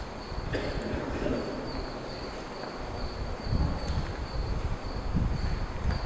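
A cricket chirping, a short high chirp repeating about twice a second, over a low steady room rumble, with a couple of soft knocks from papers being handled at the lectern.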